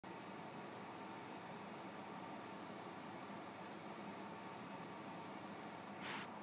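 Faint steady hiss with a low hum: the recording's background noise and room tone, with nothing else happening.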